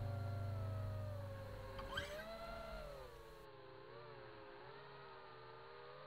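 Small FPV quadcopter's electric motors and propellers whining, the pitch rising and falling as the throttle changes, with a short tick about two seconds in. The last of a song's background music fades out over the first two seconds.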